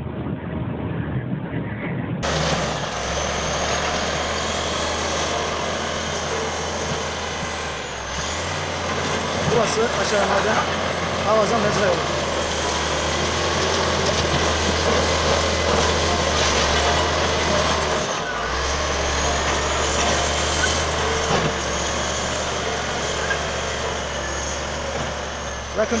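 Crawler bulldozer's diesel engine running steadily as the machine pushes broken rock, with knocks from the rock. The engine drone drops out briefly twice, about eight and eighteen seconds in. A cough comes about halfway through.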